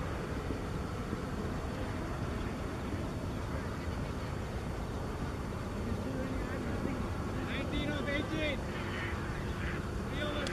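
Steady low outdoor rumble, then from about six seconds in, raised voices calling out in quick, rising and falling bursts.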